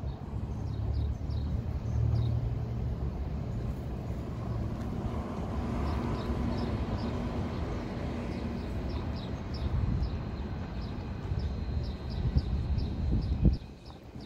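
Street traffic: a motor vehicle's engine running nearby, a steady low rumble that swells around the middle, with a single knock near the end.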